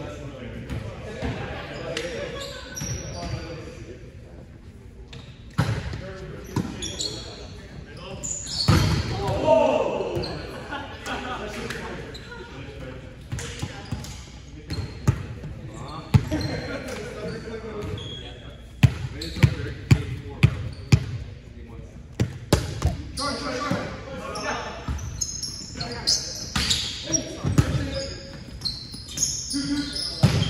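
Indoor volleyball game in an echoing gymnasium: a ball is struck and bounced with sharp smacks, including a run of about six evenly spaced bounces on the hardwood floor near the two-thirds mark. Players call out, and sneakers give short high squeaks on the court.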